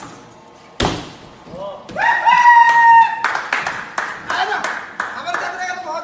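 A thud from a landing on gym crash mats about a second in, then a long, loud, high shout and excited voices with scattered sharp claps or slaps.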